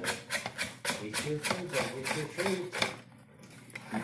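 A person laughing in a run of quick, even bursts that stops about three seconds in.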